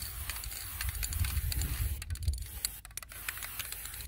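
Aerosol spray can of Rust-Oleum NeverWet top coat hissing as a spray coat goes onto a car bumper, stopping about three seconds in. Scattered light clicks and a low rumble run underneath.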